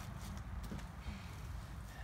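Faint, irregular hoofbeats of horses over a low, steady rumble.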